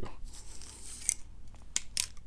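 Plastic wrap on a book being cut open with a small blade: a faint scratchy cutting noise, then a few small clicks and crackles toward the end.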